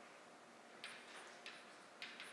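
Faint chalk on a blackboard: a few short ticks and scrapes as letters are written, over near-silent room tone.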